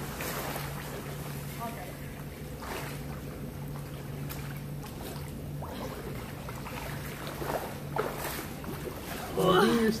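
Water splashing and sloshing as a swimmer swims to the pool edge, in several surges over a steady low hum. A woman's voice comes in near the end.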